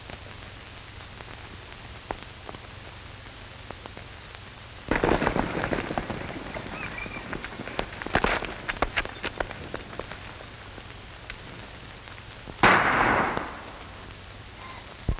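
Gunshots on an old film soundtrack over steady hiss: a loud shot about five seconds in with a trailing rumble, a quick run of several sharper shots around eight to nine seconds, and another loud shot near the end.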